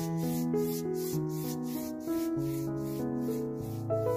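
A bristle paintbrush scrubbing acrylic paint on canvas in quick back-and-forth strokes, about three a second, over background music of slow, sustained keyboard notes.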